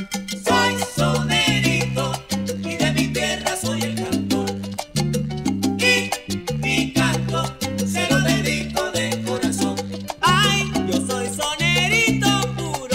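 Salsa band playing an instrumental passage: a stepping bass line and busy percussion under wavering melodic lead lines.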